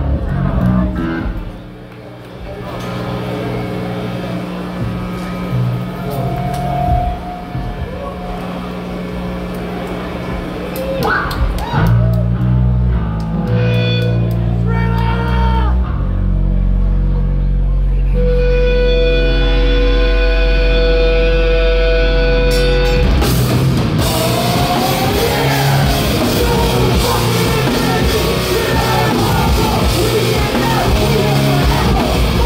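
Hardcore punk band playing live through a PA: a slow buildup of held bass and guitar notes, then the full band comes in loud about 23 seconds in.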